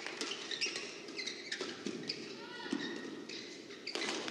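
Court shoes squeaking on the badminton court mat, with footsteps and scattered sharp taps over the steady murmur of a large indoor hall.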